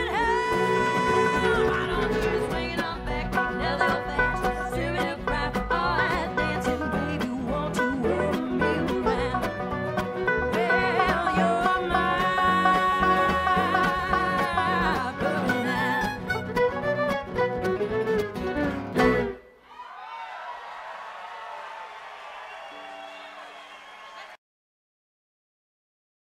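A song with singing voices and instruments, with long held sung notes. About nineteen seconds in the song ends abruptly, leaving a quieter ringing tail that fades away.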